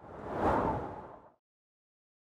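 An edited whoosh sound effect for an animated logo reveal. It swells out of silence to a peak about half a second in and fades away before a second and a half.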